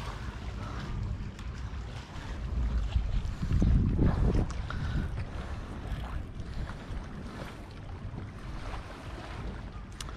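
Wind buffeting the microphone outdoors: a low, uneven rumble that swells about three to four seconds in.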